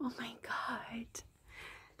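A woman whispering softly in short, breathy bursts with a few faint voiced notes, no words made out.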